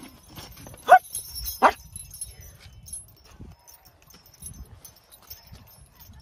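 Two short yelps about a second apart, each rising then falling in pitch, while a heavy metal chain jingles and clinks in light, scattered clicks.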